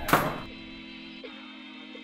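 A single heavy thunk just after the start, then quiet background music with soft plucked notes.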